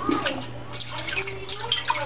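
Chicken broth pouring from a carton into a large metal stockpot that already holds broth: a steady stream of liquid splashing.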